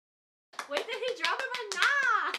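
Rapid hand clapping, many quick claps in a row, starting about half a second in, mixed with a woman's excited voice.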